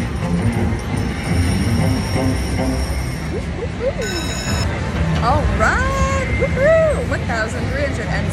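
Slot machine win music with steady chiming tones during a bonus payout tally. About halfway through comes a brief ringing chime, and then a woman's voice.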